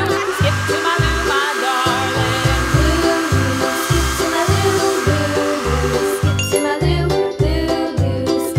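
Hair dryer blowing, a steady rush of air with a thin high whine, cutting off about six seconds in. It plays over light background music with a steady beat.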